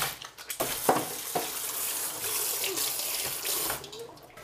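Running water from a tap, a steady hiss that starts about half a second in and stops just before the end, with a few brief child vocal sounds early on.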